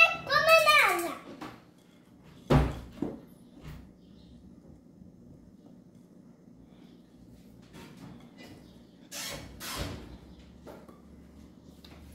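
A child's voice briefly at the start, then a wire whisk stirring thick cake batter in a glass bowl, faint and soft. A heavy thump comes about two and a half seconds in, and a couple of knocks come near the ten-second mark.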